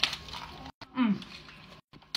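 Crisp crunch of teeth biting through the flaky filo pastry of a spanakopita, a quick cluster of cracks right at the start, followed by a short "mm" about a second in.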